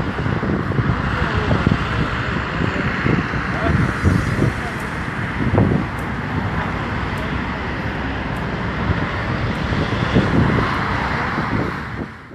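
Steady outdoor city ambience: road traffic and wind on the phone microphone, with indistinct voices close by.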